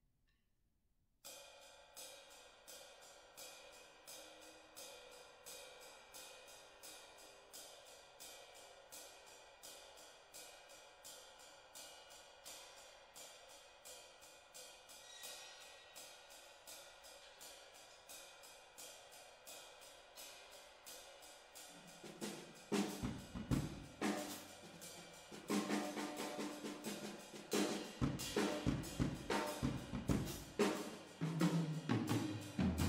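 Tama drum kit played with sticks: a steady cymbal pattern starts about a second in. About three-quarters of the way through, louder drum and bass drum hits join it.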